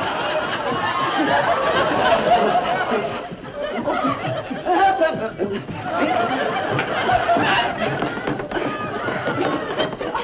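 A studio audience laughing over background music.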